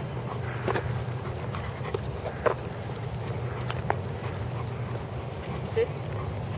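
Footsteps of a person and a large dog walking on asphalt: a few scattered sharp taps and clicks over a steady low background noise.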